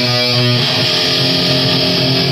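Punk band playing live: loud distorted electric guitar and bass guitar holding ringing chords.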